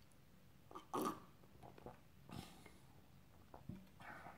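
Faint mouth sounds of a person sipping beer from a pint glass and swallowing: a slurp about a second in, then a few softer gulps.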